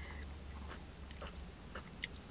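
Faint mouth and lip sounds, a few soft clicks, from someone savouring a sip of iced lemonade, over a steady low hum inside a car cabin.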